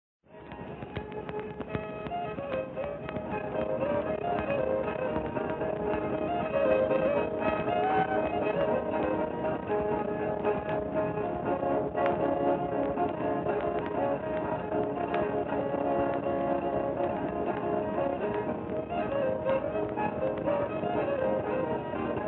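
Old-time fiddle playing a fast dance tune from an early OKeh 78 rpm record, with scattered surface clicks and crackle and a dull, narrow sound. The music starts just after the beginning.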